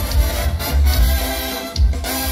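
Live Mexican banda music: a brass section of trumpets and trombones playing over drums and a steady pulsing bass, in an instrumental passage without singing.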